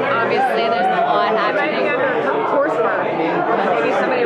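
Many people talking at once in a crowded bar room: steady overlapping chatter with no single clear voice.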